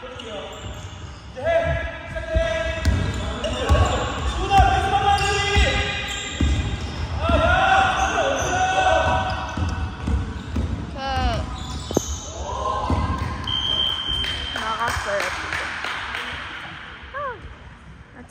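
A basketball bouncing on a hardwood gym floor during play, with players' shouted calls and sneakers squeaking, all echoing in a large gym hall.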